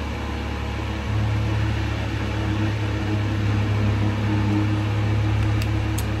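Electric fans running close by: a steady hum with a low drone that gets louder about a second in.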